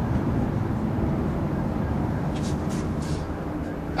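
A whiteboard marker writing: a few short, high scratchy strokes a little past halfway. Under it runs a steady low background rumble.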